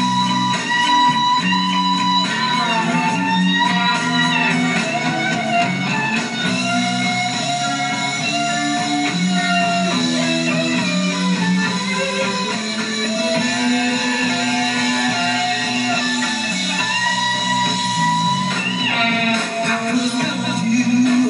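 Live rock band playing an instrumental break with an electric guitar lead: long held notes that bend in pitch over steady bass and chords.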